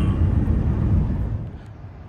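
Road and engine noise inside a moving pickup truck's cab, a steady low rumble that drops away about one and a half seconds in, leaving a much quieter outdoor background.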